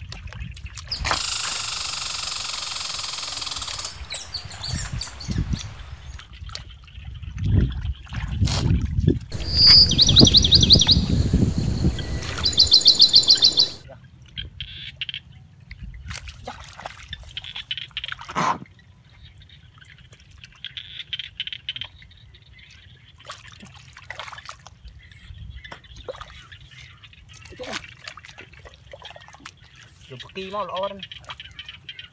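Bare hands digging and scooping through wet rice-paddy mud and shallow water: scattered squelches, splashes and trickling. A loud hiss-like noise begins a second or so in and lasts about three seconds. About halfway through, a louder noisy stretch with a rapid high rattle lasts a few seconds and cuts off suddenly.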